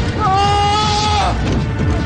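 Dramatic film background score: a single long, wailing, voice-like note, sliding up into pitch and held for about a second over a low rumbling bed.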